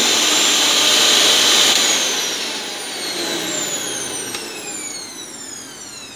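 Mixer grinder motor running at full speed with a high whine, then switched off about two seconds in and spinning down, its whine falling steadily in pitch as it slows. It runs normally again because its tripped overload-protector reset button has been pressed back in.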